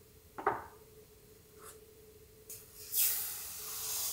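Fine granulated sugar poured in a stream into orange juice in a saucepan, a steady hiss through the last second or so. Before it, about half a second in, a utensil knocks once as it is set down on the counter.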